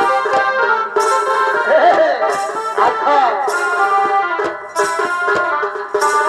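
Live Chhau dance music: a barrel drum (dhol) struck with a stick, in uneven strokes, under a loud sustained reedy melody. The melody has sliding, bending notes in the middle.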